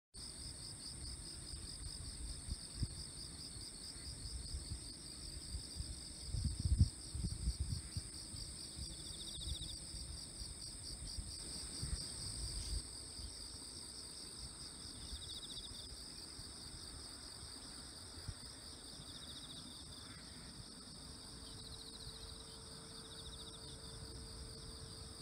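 A chorus of insects singing in rice paddies: steady, high, pulsing trills at two pitches, with a shorter buzzing call that comes back every few seconds. A few low rumbles come through about six to eight seconds in.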